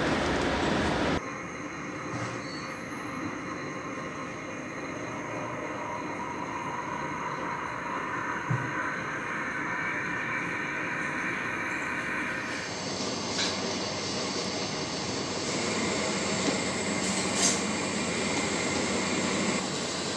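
Steady laboratory machine noise: a laminar flow hood's blower rushing loudly for about the first second, then, after a cut, a quieter steady hum with faint tones from the shaking incubator and the equipment around it. Near the end come a few light clicks and knocks as the incubator is opened and glass culture flasks are handled.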